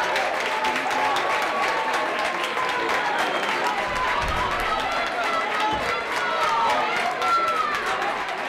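Many voices of a small football crowd shouting and calling out at once, with some long drawn-out yells as an attack on goal unfolds.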